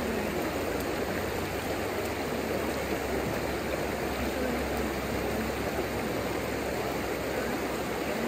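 A shallow, rocky river rushing steadily over riffles and small rapids: a continuous, even water noise.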